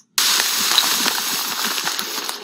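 Rustling and crackling of dry tall grass and brush as people push through it on foot, starting abruptly just after the beginning.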